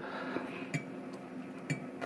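A few faint, light clinks of a metal fork against a ceramic dinner plate as scallops are handled, scattered through a quiet stretch.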